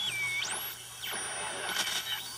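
Beat-note whistle from a homemade beat-frequency oscillator, an old AM transistor radio, mixing into a shortwave receiver, its pitch sliding as the BFO's tuning capacitor is turned with a screwdriver. The thin tone drops to a low whistle at the start, sweeps steeply up to a very high pitch about half a second in, holds there, then starts climbing again near the end.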